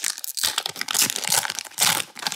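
Foil Pokémon XY Evolutions booster pack wrapper crinkling as it is torn open, a dense irregular crackle with a louder burst near the end.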